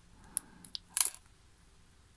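A few small metallic clicks as a wire fishing snap and swivel are handled between the fingers, the sharpest about a second in.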